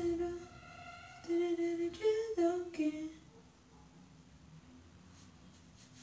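A woman humming a tune: several held notes that step up and down over the first three seconds, then it stops.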